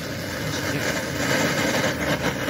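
A steady mechanical running noise with a hiss, growing slightly louder and brighter about halfway through.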